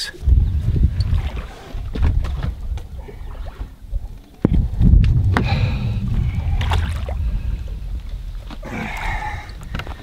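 Water sloshing and splashing, with sharp knocks against the boat, as a musky is handled in the landing net and lifted out over the side, all over a low rumble. The clearest knock comes about halfway through.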